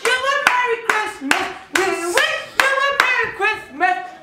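Singing with handclaps keeping a steady beat, about two claps a second.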